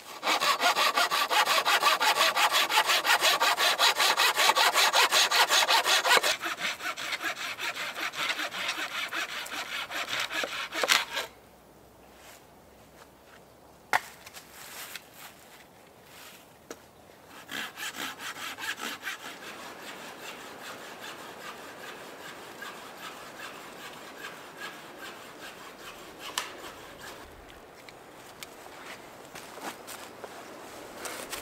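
Hand saw cutting through an oak branch laid across a stump, in quick, steady back-and-forth strokes. The sawing is loudest for the first six seconds and then eases. It stops about eleven seconds in with a knock, and starts again more quietly about eighteen seconds in.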